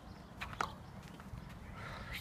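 Two light knocks about a fifth of a second apart, about half a second in, over a faint low rumble.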